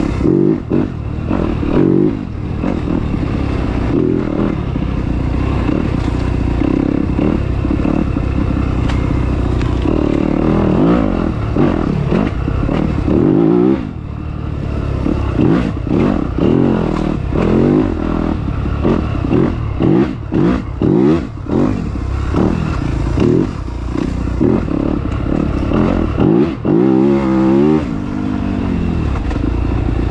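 Yamaha YZ250 two-stroke dirt bike engine being ridden hard, its revs rising and falling constantly as the throttle is opened and chopped again and again, with the on-off throttle coming quicker in the second half.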